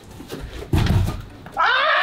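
Quick running steps building to a heavy thump on the floor as a jumper plants and takes off for a vertical jump. About a second and a half in, a loud, drawn-out yell of effort cuts in.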